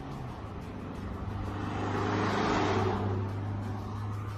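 A gendarmerie vehicle drives close past, its engine and tyre noise swelling to a peak about two and a half seconds in and then fading, over a steady low hum.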